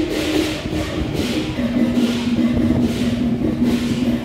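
Temple ritual music: one long held wind-instrument note that steps down in pitch about a second and a half in, over an even beat of percussion.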